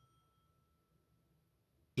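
Near silence: a pause in a man's narration, with only a very faint low hum.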